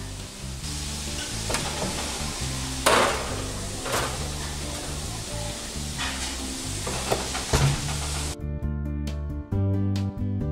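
Background music over a steady hiss, with a few sharp clicks and knocks as a metal loaf tin is set onto an oven's wire rack. The hiss cuts off suddenly near the end, leaving only the music.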